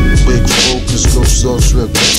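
Hip hop track: a man rapping over a drum beat.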